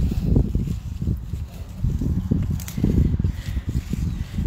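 Uneven low rumble of handling and wind noise on a handheld phone microphone, with a few faint rustles and snaps as a hand reaches in among strawberry plants.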